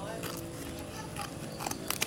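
Scissors snipping through the tape and wrapping of a parcel: several separate sharp cuts, the loudest near the end.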